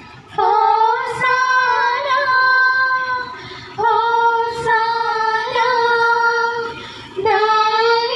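Female voices singing a slow devotional hymn in three long-held phrases, each starting with a short upward slide into the note.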